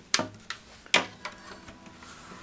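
Handling noise from an acoustic guitar being shifted in the hands: two sharp knocks just under a second apart, each followed by a brief low ringing from the body and strings, with a few softer clicks between.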